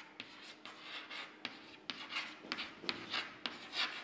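Chalk writing on a chalkboard: a string of short, irregular scrapes and sharp taps as the letters are written stroke by stroke.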